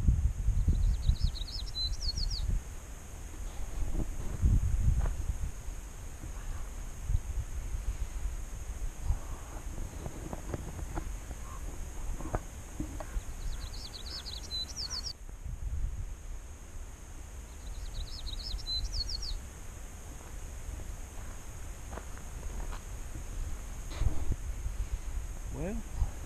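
A small songbird singing the same short, quick phrase three times, over an irregular low rumble on the microphone that is strongest in the first few seconds.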